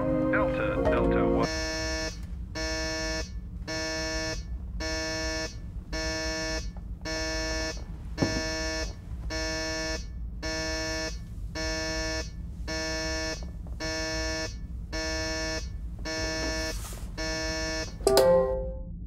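Electronic alarm buzzer sounding in repeated pulses, about one buzz a second, over a steady low rumble: a warning alarm going off in a spacecraft control cabin.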